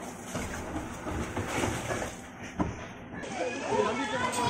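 Water rushing along a water slide under a rider's mat, with indistinct voices in the background and a single sharp knock a little past halfway.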